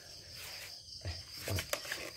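A few soft knocks and clicks in the second half as hands take hold of a stopped brushcutter's engine, over a faint steady high-pitched background chirring.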